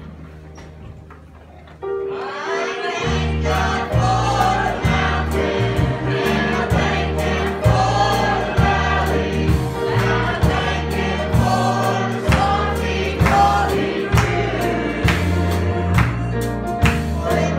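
A gospel hymn sung by many voices together with a church band of piano, electric bass and drum kit. For the first two seconds a soft held keyboard chord fades, then the full band and singing come in with a steady beat.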